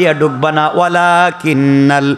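A man preaching in a melodic, chant-like singsong, holding long pitched notes with short breaks between phrases.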